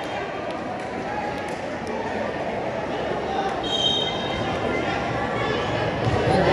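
Crowd of spectators chattering in a large, echoing gymnasium during a basketball game, with a brief high squeak about four seconds in.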